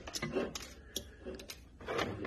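Several light clicks and knocks of plastic Milwaukee M12 battery packs and multimeter test leads being handled on a tabletop.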